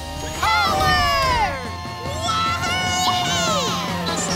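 Cartoon voices cheering and whooping over background music: falling whoops soon after the start, then a long held shout in the second half.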